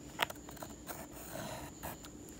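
Pencil scratching faintly as it traces around the edge of a nickel on a wooden blank, with a sharp tick about a quarter second in.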